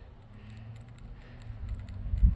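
Faint footsteps while walking: a few light ticks over a low steady outdoor hum, with low rumble on the microphone building near the end.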